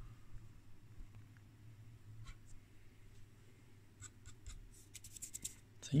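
Quiet handling sounds: faint scattered clicks and light rubbing as fingers touch parts and tube sockets inside a vacuum-tube oscilloscope chassis, the clicks coming more often near the end, over a low steady hum.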